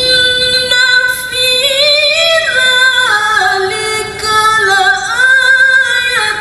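A woman reciting the Quran in the melodic tilawah style: long sustained notes that step up and down in pitch, with wavering, ornamented turns and a short break about four seconds in.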